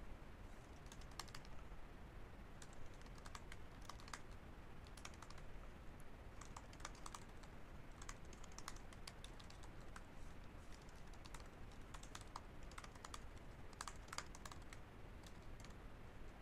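Faint typing on a computer keyboard: irregular runs of key clicks broken by short pauses.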